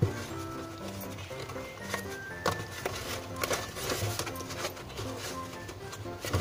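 Quiet background music with held notes, over a few faint taps and rustles of cardboard being folded by hand.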